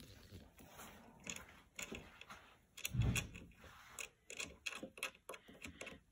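Faint, irregular metal clicks and ticks of a small screw being turned by hand into a motherboard CPU socket's mounting hole, with a soft thump about three seconds in.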